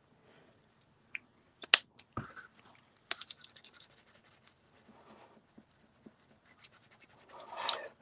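A Distress Crayon scraped on its side across cardstock: intermittent bursts of dry, scratchy strokes with a few light taps, the busiest run about three seconds in.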